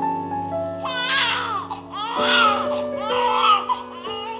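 Newborn baby crying in three cries of about a second each, over background music with held notes.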